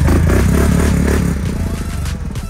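ATV engine running close by with a rough, pulsing note, easing off slightly in the second half.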